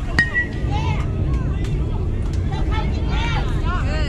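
A youth baseball bat striking the ball with a sharp ping that rings briefly, followed by spectators shouting and cheering, with a steady low rumble of wind on the microphone.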